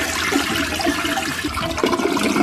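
Toilet flushing after its push-button cistern is pressed: a steady rush of water through the bowl.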